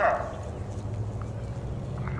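Horse walking on soft, worked arena dirt, its hoofbeats faint, over a low steady hum.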